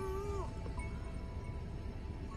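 A cat's long meow, held on one pitch, that slides down and ends about half a second in, with a steady higher tone held on after it until near the end.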